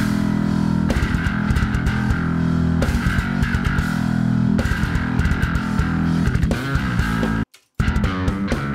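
Multitrack playback of a heavy song with programmed drums and guitar, and an electric bass guitar played along through a Darkglass amp-simulator plugin as it is recorded. The music cuts off suddenly near the end, then starts again for a moment.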